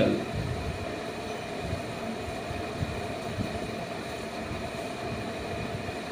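Steady hum of a room air conditioner, with faint scratching of a pen writing on paper.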